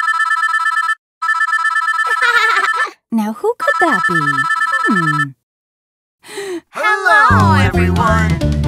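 A telephone ringing three times with a trilling electronic ring, each ring one to two seconds long. A voice with falling pitch sounds over the later rings. Children's music starts near the end.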